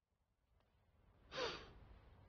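A man's short, breathy exhale or sigh about a second and a half in, over a faint low rumble.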